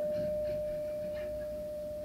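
A single pure, steady synthesizer note held at the end of a song and slowly fading, from a 1980 four-track home cassette recording.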